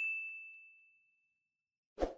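Notification-bell ding sound effect from a subscribe-button animation: a single bright chime that rings out and fades away over about a second. A short thump comes at the very end.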